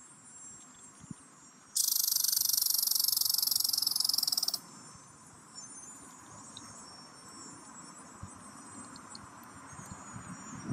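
A cicada giving one loud, high, rapidly pulsing buzz for about three seconds, beginning about two seconds in and cutting off abruptly.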